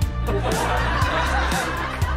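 A group of people laughing at a joke over background music with a steady beat.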